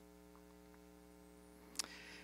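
Faint, steady electrical mains hum in the microphone's audio chain, a stack of even tones with no speech over it. A single brief click comes shortly before the end.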